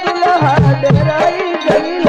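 Birha folk music: a wavering melody over a steady, driving hand-drum rhythm of repeated bass strokes.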